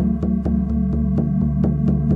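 Meditation music: a low, steady electronic drone that throbs evenly about four times a second, with a click at each pulse.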